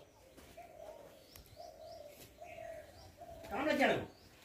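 A dove cooing in a run of low, even notes, with a few faint high bird chirps. A short, louder voice cuts in near the end.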